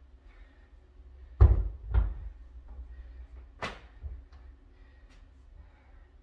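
Kettlebells being handled and set down on an exercise mat over a wood floor: two heavy thuds about half a second apart, a second and a half in, then a sharper knock about two seconds later, with a few light clicks between.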